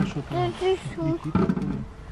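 Voices talking, the words not clear.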